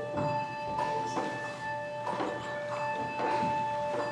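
Handbells ringing steady held notes in a pause of the singing, with a few soft rustles.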